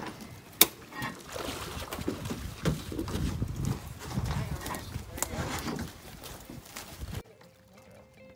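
Indistinct voices of people talking a little way off, with a sharp knock about half a second in and a few softer clicks. The sound drops to near silence about seven seconds in.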